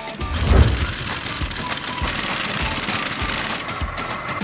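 Pneumatic impact wrench running on a brake caliper bolt for about three seconds, over background music.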